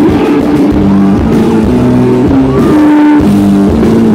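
Live rock band playing loudly, with held electric guitar notes stepping from pitch to pitch over the full band.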